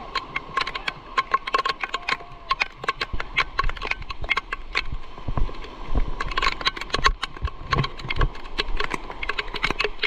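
Heavy rain striking the camera close up: a dense, irregular run of sharp ticks and taps over a hiss of rain, with a few dull low thumps in the second half.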